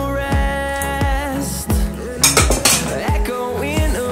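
Background music with a steady beat and a melody, over a metal spoon scraping and clinking against a steel pot as a thick cooked leaf mixture is scooped out, the clatter most noticeable around the middle.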